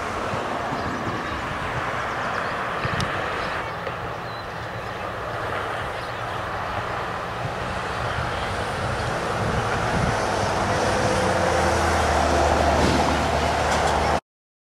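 Steady outdoor background noise, with a low engine hum that grows louder over the last few seconds as a vehicle passes.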